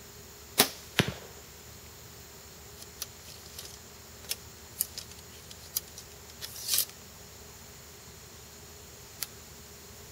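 Compound bow shot off a Whalen's Hooker three-finger release: a sharp crack as the string lets go, then a second thud a fraction of a second later as the arrow strikes the target. After that, a scatter of light clicks and rattles as the bow and release are handled.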